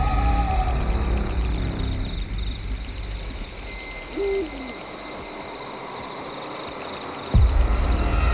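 Night-forest sound design: a single owl hoot about four seconds in, over a steady high-pitched pulsing trill. A low rumble fades out over the first few seconds, and a deep boom hits near the end.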